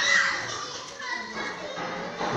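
A group of children's voices in a hall, chattering and calling out, with a short high cry that falls in pitch at the very start.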